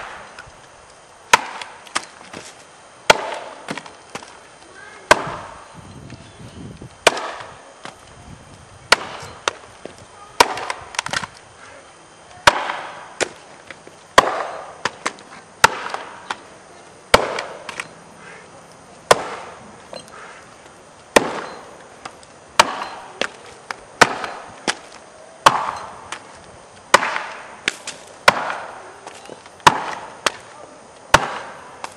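Axe chopping into a block of wood mounted high on a pole, in springboard chopping: a steady series of sharp strikes, about one every one and a half to two seconds, with smaller knocks between some of them.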